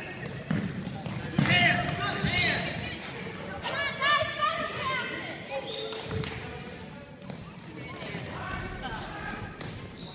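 Basketball bouncing on a hardwood gym floor during play, with the squeak of sneakers and shouting voices echoing in the hall.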